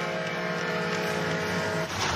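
Arena goal horn sounding one steady, held chord for a home-team goal, cut off just before the end.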